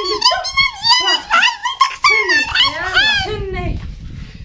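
A woman's high-pitched wailing voice: a quick run of shrill rising-and-falling cries with no clear words, dying away near the end.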